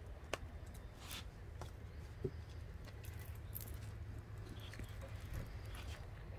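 Light rustling and a few faint, scattered clicks as a plastic zip tie is threaded through fabric on a wire wreath frame, over a low steady hum.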